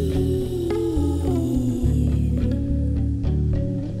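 Live band playing an instrumental passage: electric guitar and bass guitar over drums and keyboard, with a melody line that slides down in pitch about a second in.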